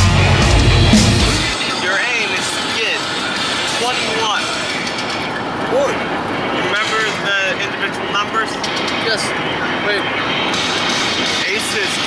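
Heavy rock music that cuts off about a second and a half in, then steady road noise inside a moving van's cabin with scattered bits of voices.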